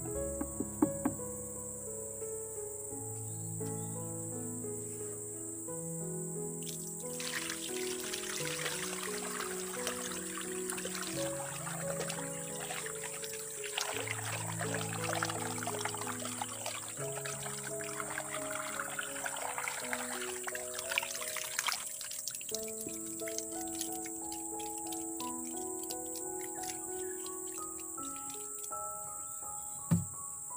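Liquid poured from a bucket into a plastic jerry can, a steady splashing pour that starts about seven seconds in and cuts off about fifteen seconds later. Background music and a high, steady insect drone run underneath throughout.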